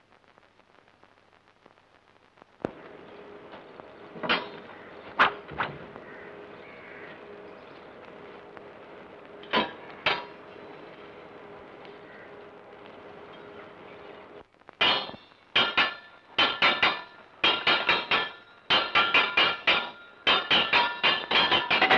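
Swords clashing: a few single sharp metal knocks, then from about fifteen seconds in a fast, repeated run of ringing metal-on-metal clangs, over the steady hiss and hum of an old film soundtrack.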